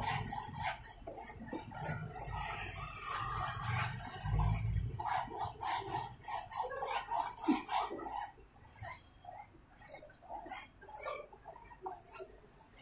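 Wide flat bristle brush stroking a gesso coat onto a stretched canvas: a run of short, scratchy swishes, one after another. A low rumble underlies it from about two to five seconds in.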